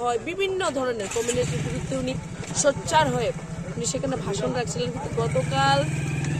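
A motor vehicle's engine starts running steadily about a second in and keeps going, a low pulsing hum under a woman talking to the microphone.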